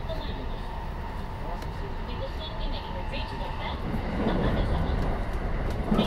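JR 223 series 1000-subseries electric train running, heard from inside the passenger car: a steady low rumble of wheels on rail with a thin steady whine that fades out a little past halfway, after which the rumble grows louder for the last two seconds.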